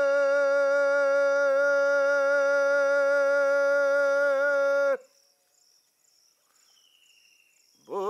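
A Bengali folk singer holds one long, steady note on an "oho" for about five seconds. It cuts off suddenly, leaving near silence until the singing starts again at the very end.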